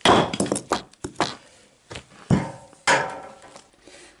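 Splitting maul (merlin) striking oak offcuts on a wooden chopping block: a sharp hit right at the start, then more knocks and the clatter of split pieces over the next three seconds.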